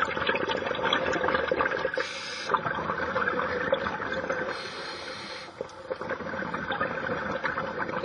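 Underwater bubbling and crackling from a scuba diver's exhaled air, with two brief hisses.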